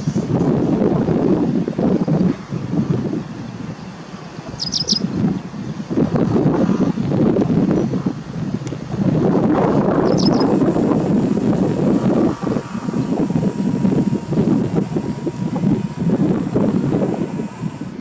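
Wind buffeting the microphone throughout, with brief high bird chirps: a quick triple note about five seconds in and a double note about ten seconds in.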